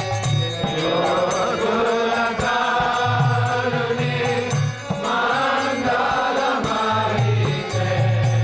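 Devotional kirtan: voices singing a Vaishnava chant with instruments accompanying, the melody going in phrases with a short break about halfway through.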